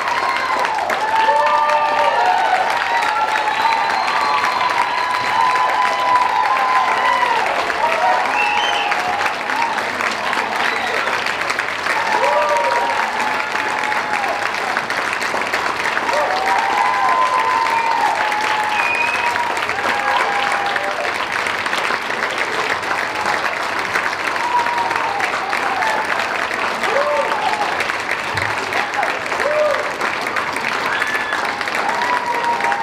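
Audience applauding steadily, with shouts and whoops from the crowd over the clapping, most of them in the first half.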